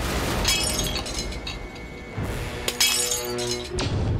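Glass bottles smashing and shattering, twice: once about half a second in and again near the three-second mark, over dramatic film background music. A quick falling swish comes just before the end.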